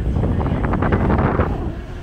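Wind buffeting the microphone on a moving boat, gusting harder in the middle, over a steady low rumble from the boat underway.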